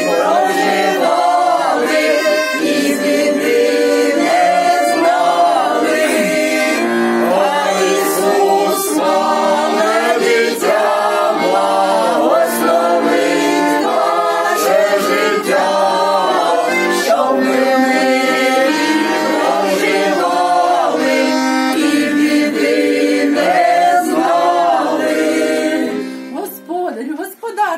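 A small group of men's and women's voices singing a folk song together, accompanied by a button accordion (bayan); the singing stops at the very end.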